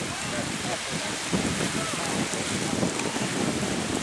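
Steady outdoor wind noise with water washing on the shore, and faint voices murmuring in the background.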